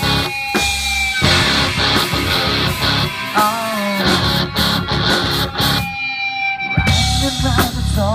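Live rock band playing an instrumental passage on electric guitars, bass guitar and drum kit. About six seconds in, the drums and bass drop out for roughly a second, leaving a held guitar note, and then the full band comes back in.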